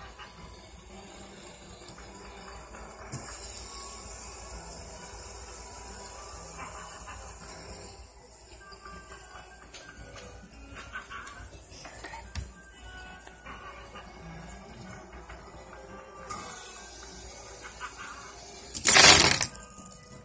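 Fidget spinners spinning and being stacked on a wooden table: a faint steady whir with light clicks as they are set down, then a loud clatter about a second before the end.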